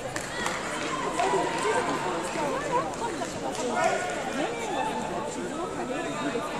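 Many voices talking and calling out at once: crowd chatter in a sports hall, with no one voice standing out.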